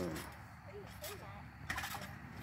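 Metal trampoline springs clinking as a child bounces on the mat and pushes off into a flip: a quick cluster of light metallic clicks near the end.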